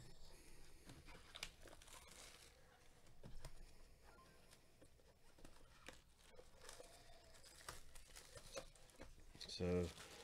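Faint crinkling and tearing of plastic shrink wrap as it is peeled off a cardboard trading-card hobby box, with scattered small rustles and clicks.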